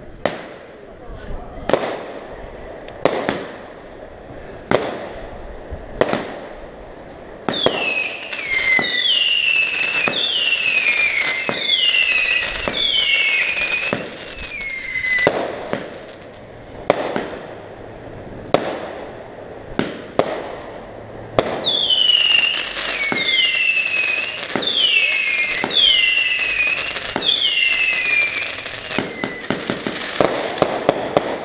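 Winda Fireworks Super Sonic 200-gram, 25-shot cake firing. It opens with single shots about every second and a half, each a sharp report. Then comes a run of crackling whistle tails, each whistle dropping in pitch over about a second, then more single shots and a second run of falling crackling whistles.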